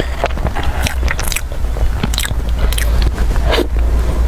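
Close-miked eating of a soft chocolate cream dessert: wet, clicking mouth and chewing sounds, with a metal spoon scraping against the foil-lined cup. A steady low hum lies underneath.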